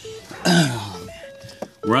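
A man coughing once, a rough, falling cough about half a second in that trails off. Faint steady tones are heard after it.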